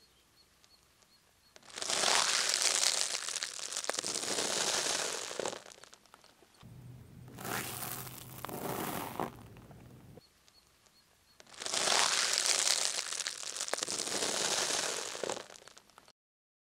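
Car tyre rolling over a dry instant-noodle block and its plastic packet: two long bouts of crunching and crinkling, about four seconds each, with a quieter stretch of crackle over a low hum between them.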